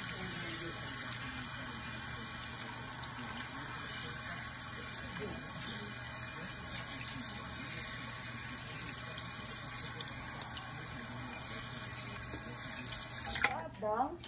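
Water running steadily from a salon shampoo-bowl sprayer hose and splashing through wet hair into the sink as the hair is rinsed; it stops abruptly near the end.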